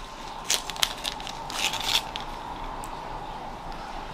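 Close handling of a small anxiety breathing-tube necklace: a few sharp clicks about half a second in, then a short rustle.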